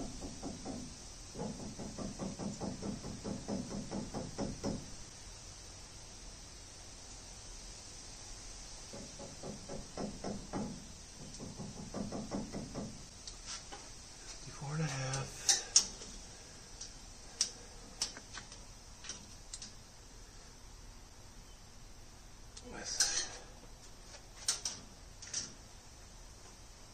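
A steel tape measure being worked against steel tubing: two stretches of soft rattling, then a run of sharp clicks and taps, the loudest a little past the middle and again near the end.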